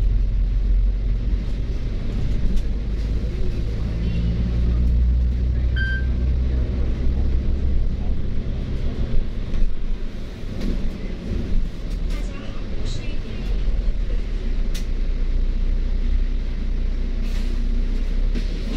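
Diesel bus engine and road noise heard from inside a moving double-decker bus: a loud, steady low rumble that swells and eases as the bus pulls away and slows. A short high beep sounds about six seconds in.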